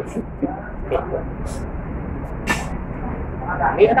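Restaurant dining-hall ambience: a steady background hum with faint voices, and a few sharp clicks, the loudest about two and a half seconds in.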